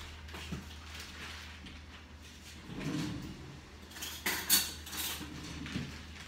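Kitchen handling clatter: a few sharp knocks and clicks, the loudest a little past the middle, with a dull low rumble about halfway, over a steady low hum.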